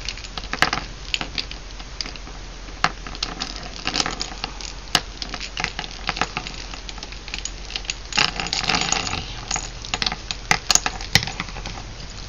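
Sheer ribbon rustling while small silver jingle bells and pearl beads click and clink against wire hoops as two tangled ornaments are pulled apart by hand. The handling noise is busiest about eight seconds in.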